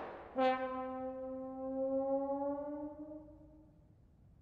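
Trombone holding one long note that drifts slightly upward in pitch and fades away, closing the piece.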